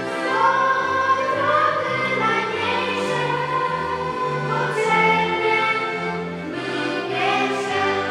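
A girls' choir singing a song, accompanied by accordions, with the bass moving note by note beneath held, sung notes.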